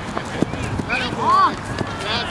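Shouting from the sideline crowd, with one loud drawn-out shout rising and falling in pitch about a second in. Under it are scattered thuds of players running on grass.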